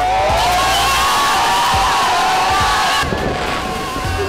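A group of children cheering and shouting together in held calls. It stops abruptly about three seconds in, leaving quieter scattered voices.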